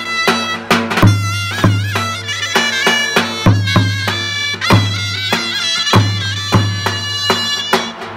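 Zurnas play a shrill, ornamented Turkish folk melody over a davul bass drum. The drum is beaten with a heavy stick in a steady rhythm of booming strikes, several to the second.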